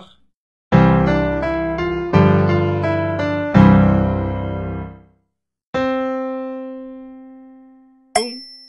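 Piano sounding a cadence of three chords in C major to set the key for a melodic dictation, each chord struck and left to ring. Then a single C is struck and slowly fades.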